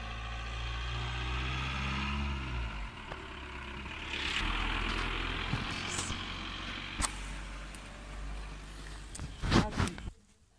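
A car on the road close by: a low engine hum, then tyre and engine noise swelling and fading as it passes. Near the end there are a few sharp knocks.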